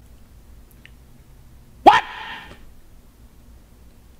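A man's sudden loud shout of "What?!" about two seconds in, one short yell rising in pitch with a brief breathy tail: a startled reaction to a sip of a spicy soda. A faint click a little before it over quiet room tone.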